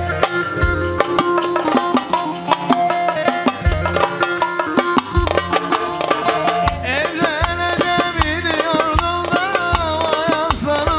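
Live Turkish folk dance music (oyun havası): bağlama and keyboard over a steady drum beat with deep bass thumps. About seven seconds in, a wavering, ornamented melody line comes in over the band.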